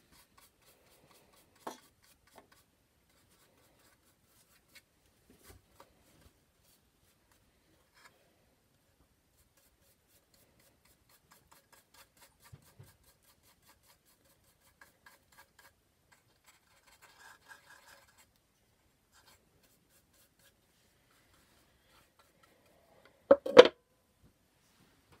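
Faint paintbrush strokes and small ticks as paint is brushed onto a wooden box, then a quick cluster of loud, sharp knocks near the end.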